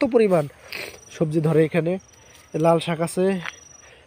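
Insects trilling in the garden, three short high trills of about half a second each, in the gaps of a man talking in Bengali in short phrases.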